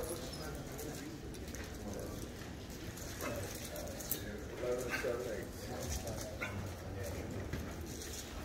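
Faint, brief yips and whines from beagles, a few scattered calls over low background murmur in a large room.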